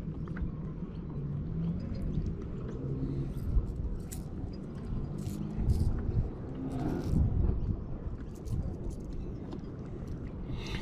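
Low outdoor rumble with scattered faint light clicks as fingers handle a lure and fishing line to rig it.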